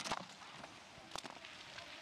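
Faint hiss of skis sliding over a packed snow course, with a few light clicks.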